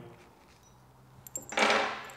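Steel drill bits being pulled from a multi-spindle boring head: a few light clicks, then near the end a brief jangle of the loose bits clinking together in a hand.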